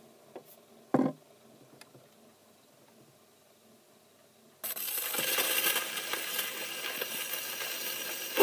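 A single sharp knock about a second in. A few seconds later the needle of the 1928 Columbia Viva-tonal Grafonola's reproducer is set down on a spinning 78 rpm shellac record, and a sudden, steady crackling hiss of surface noise starts from the lead-in groove, before any music.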